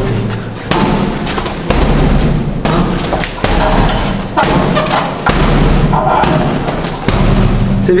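Boxing-gloved straight punches landing on a punching bag in a steady, cadenced rhythm, about one dull thud a second.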